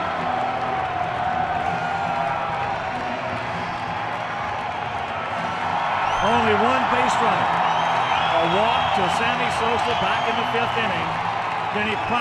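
Ballpark crowd cheering and clapping, with many voices shouting over it, swelling louder about six seconds in.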